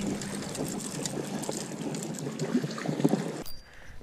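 Water sloshing and lapping against shoreline rock, with fine crackling ticks and a faint steady low hum underneath. It cuts off abruptly about three and a half seconds in.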